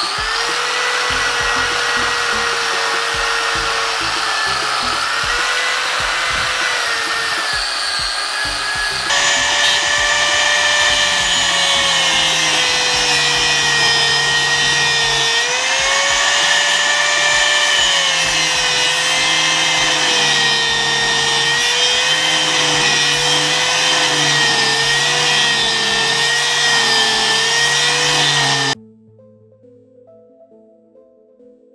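Electric grinder working steel, its motor pitch wavering up and down as the wheel is pressed on and eased off. About nine seconds in the sound changes and grows louder as an angle grinder cuts down a gearbox input shaft, then stops abruptly near the end.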